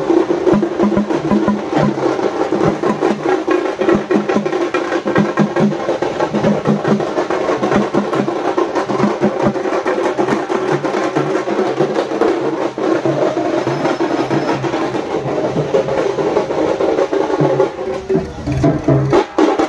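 Tamil festival drumming: parai frame drums and a barrel drum beaten with sticks in a fast, dense, unbroken rhythm.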